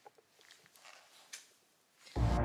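Near silence: room tone with a few faint, brief clicks and rustles.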